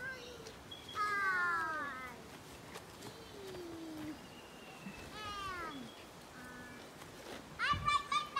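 Children's high voices calling out across an open space in several drawn-out cries that slide down in pitch, spaced a second or two apart, louder near the end.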